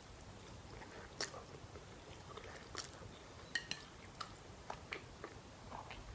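Faint close-up chewing of a mouthful of noodles, with soft wet mouth clicks scattered through.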